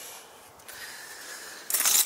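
Small things being handled and gathered up from a car seat: a quiet stretch, then near the end a sudden rustling, jangling clatter.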